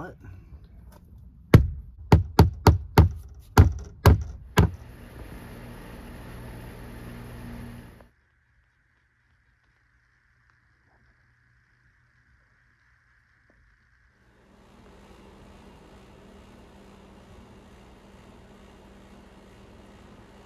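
Rubber mallet driving a decorative hammered-metal clavo nail into a cedar shutter's cross member: about eight sharp knocks in quick succession over some three seconds.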